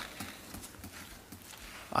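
Faint, irregular footsteps tapping on a hard floor, with quiet room tone.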